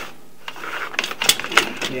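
Irregular clicking and rattling from about half a second in, typical of a sewer inspection camera's push cable and reel being worked back and forth against a blockage in the line.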